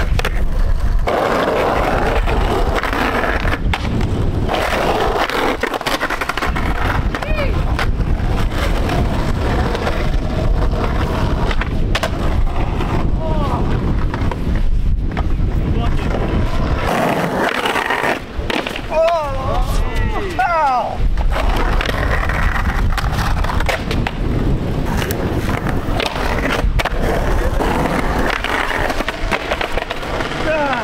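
Skateboard wheels rolling on concrete, with the metal trucks grinding along a concrete curb edge in slappy curb grinds and the board clacking against the pavement.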